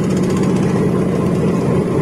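Industrial stainless-steel banana-stem slicer running steadily at a lowered speed setting: a constant motor hum with a fast, even chatter from the rotating blades as a banana stem is fed through.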